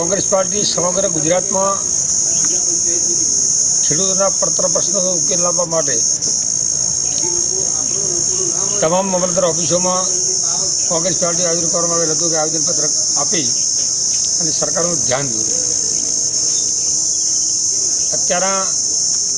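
A loud, steady high-pitched insect chorus drones without a break, while a man speaks in short stretches underneath.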